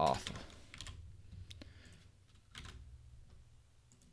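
A few scattered keystrokes on a computer keyboard, quiet and irregular.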